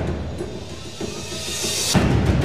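Dramatic suspense music from a TV elimination scene: a quiet sustained bed with a rising swell near the end.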